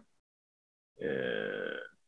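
A single held throat sound from a man, about a second long, starting about a second in after a moment of dead silence.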